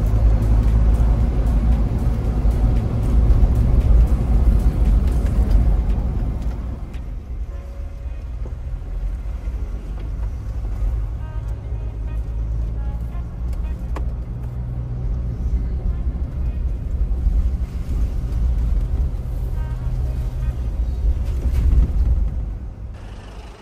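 Mahindra Thar SUV driving on a mountain road: a steady low engine and road rumble. It is louder and rougher for the first six seconds or so, then settles.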